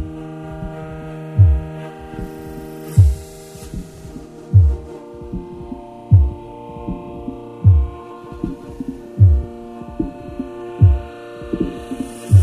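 Soundtrack drone: a sustained chord of steady tones under a deep low thump about every second and a half, each thump falling in pitch, like a slow heartbeat.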